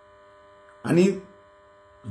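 Faint, steady electrical hum made of several even tones, with a man saying one short word about a second in.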